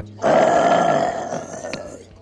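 Sucking a drink up through a plastic straw from a cup: one long slurp of about a second and a half, fading toward the end.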